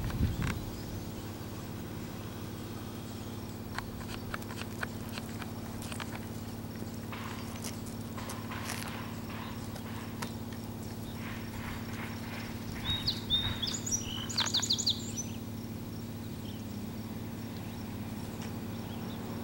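A bird calling in a short run of quick, high chirps about two-thirds of the way through, over a steady low hum and a few faint clicks.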